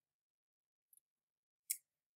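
Near silence, with one short, faint click near the end.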